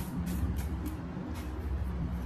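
Soft background music with long held tones over a steady low rumble, with a few faint light clicks.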